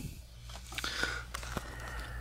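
Faint clicks and knocks of handling as a switched-off Kirby upright vacuum cleaner is tipped back to show its underside, over a low steady hum.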